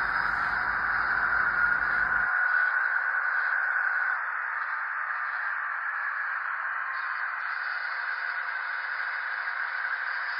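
HO scale EMD SW1500 switcher locomotive running slowly along the layout's track while pushing a boxcar: a steady, hiss-like running noise. A low rumble under it drops out about two seconds in.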